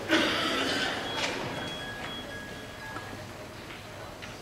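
Room noise of a concert band and audience in an auditorium just before a piece begins: a brief loud burst of noise at the start, then a low rustle that dies away, with two faint, high, steady tones in the middle.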